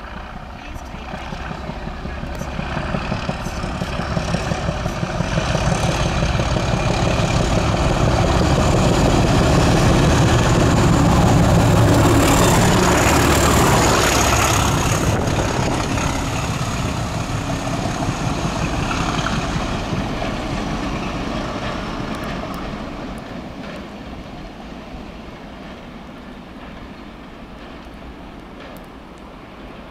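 A pair of Class 37 diesel locomotives with English Electric V12 engines working hard ('thrash') as they pass at speed. The sound builds up, peaks about halfway through and then fades as the train with its nuclear flask wagons draws away.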